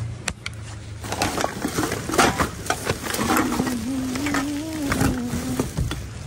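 Plastic trash bags and newspapers crinkling and rustling as they are rummaged through in a wheeled garbage cart, with many irregular crackles. About three seconds in, a low wavering tone runs under it for a couple of seconds.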